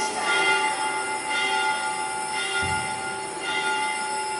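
Several steady high tones held together as one sustained chord, with a soft recurring pulse in the upper tones and a brief low thump about two and a half seconds in.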